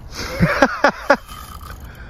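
A man's short, strained grunts and exclamations, four or five in quick succession in the first second, as he heaves on a bent rod against a hooked catfish.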